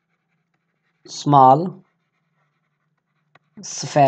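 A man's voice saying one drawn-out word about a second in, then starting to speak again near the end, with silence between.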